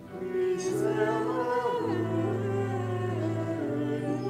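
Slow sacred choral singing in long held notes, several voices together, after a brief pause at the start.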